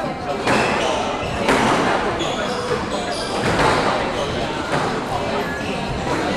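Squash rally: the ball struck hard by rackets and off the court walls, about one sharp hit a second, each ringing briefly in the hall.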